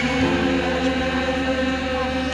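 Live pop-folk song played by a band with acoustic guitar, with a voice holding one long, steady sung note.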